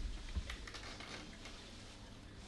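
A few light, quick clicks and taps in a quiet, crowded courtroom, over a low steady room hum. The clicks come in the first second, then only the room's background noise remains.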